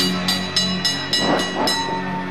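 Wrestling ring bell struck rapidly, about seven ringing strokes in two seconds, over rock music playing in the hall.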